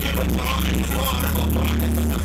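DJ set music played loud over a sound system, with a deep bass line held under the mix.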